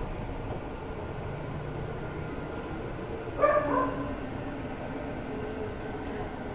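Steady background hiss and hum of a night-time outdoor phone recording, with one short, falling pitched cry about three and a half seconds in.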